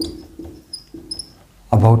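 Marker pen squeaking on a whiteboard in a few short strokes while writing, followed near the end by a man starting to speak.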